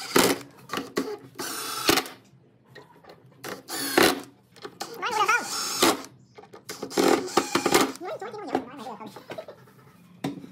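Cordless impact driver driving short screws into small steel hinges on a pine frame, in several short bursts of under a second each.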